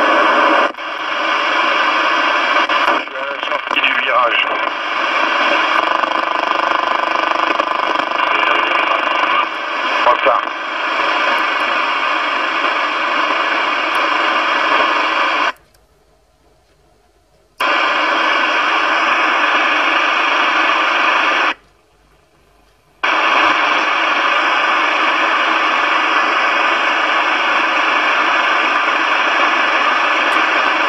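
President Wilson CB radio's speaker hissing loudly with receiver static, with faint voices coming through the noise a few seconds in and again around ten seconds in. The hiss cuts out twice near the middle, for about two seconds and then for about a second and a half.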